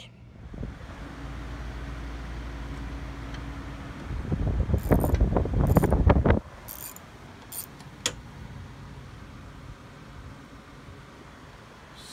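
Metal rattling and clanking from a couch's fold-out bed frame being worked on by hand. It is loudest for about two seconds around the middle, with a few sharp metallic clicks just after, and a low rumble before it.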